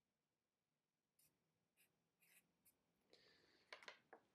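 Felt-tip marker drawing short strokes on paper, faint: a few quick scratchy strokes from about a second in, getting louder near the end, with a couple of sharp clicks.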